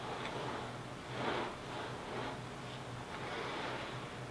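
Faint rustling and soft swishes from a man exercising on a wooden balance board, rising and falling about once a second, over a low steady hum.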